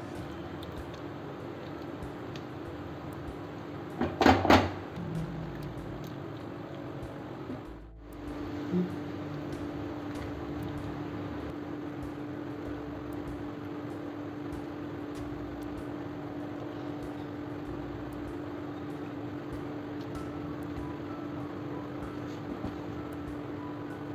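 Lemon pieces in sugar syrup heating in a nonstick pan on a gas burner, a steady hiss as the syrup comes up to the boil. There is a brief clatter about four seconds in, and from about eight seconds a steady low hum runs alongside.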